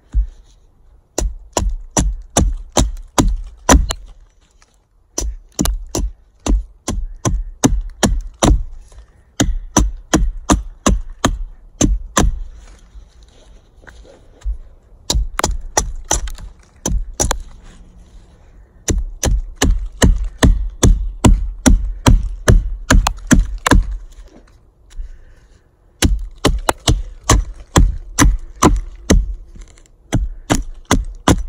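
A 16-inch Council Tool Woodcraft Camp-Carver hatchet with a carbon-steel head chopping into the end of a dead log, hewing it down into a baton. Sharp strikes of steel into wood come about three a second, in runs of a few seconds with short pauses between.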